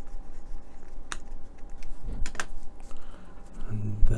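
A few light clicks and taps as small plastic model parts and a precision screwdriver are handled and set down on a cutting mat: one click about a second in, then two close together a little after two seconds.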